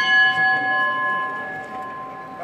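A single strike of a small metal bell ringing on with several clear tones and slowly fading: the bell on a Málaga procession throne, rung as a signal to the bearers.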